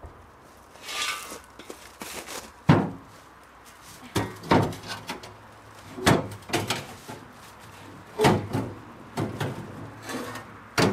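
Knocks, clunks and rattles of a propane hose and its fittings being handled inside a metal propane locker in a van's side. They come in short bouts every second or two, with one sharp knock about three seconds in.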